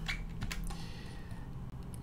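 A few sharp clicks from a computer mouse and keyboard in the first second, over a low steady hum.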